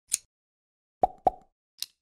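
Sound effects of an animated logo intro: a short high tick, then two quick knocks about a quarter second apart with a brief ring, then another short high tick near the end.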